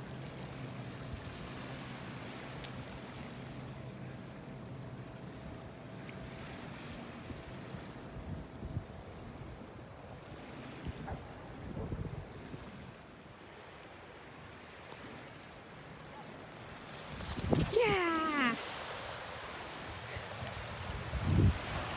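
Outdoor beach ambience at the water's edge: wind on the microphone and faint lapping water, with a steady low hum through the first several seconds and a few soft knocks. Near the end a person says "yeah".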